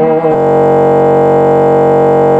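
A steady, buzzy held tone at one unchanging pitch, rich in overtones, starting about a third of a second in and holding at an even level without fading.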